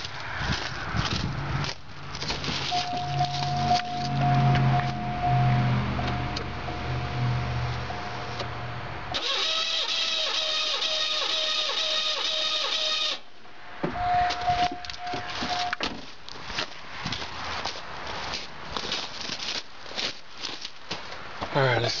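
V6 engine cranking over on its starter with the spark plugs removed, turning for a compression reading: a steady run of about four seconds that cuts off abruptly. Before and after it come irregular handling and scuffing noises.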